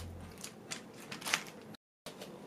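Two short, crisp clicks about two-thirds of a second apart, the second louder, over faint room noise. The sound cuts out completely just before the end.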